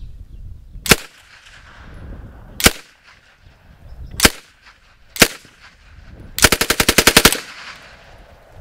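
Czech Sa vz. 26 submachine gun, in 7.62x25mm Tokarev, firing four single shots about a second apart, then a short fully automatic burst of about ten rounds. Its trigger sets the mode: a partial pull fires single shots and a full pull fires full auto.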